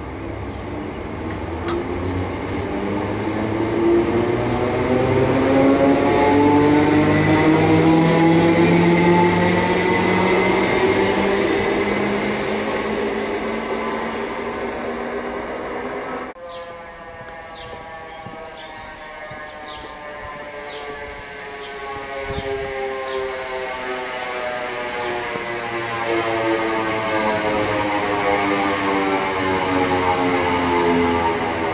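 Greater Anglia electric multiple unit's traction motors whining and rising steadily in pitch as the train accelerates away from the platform. After a sudden cut about halfway through, a second electric train approaches, its motor whine falling in pitch as it brakes and growing louder toward the end.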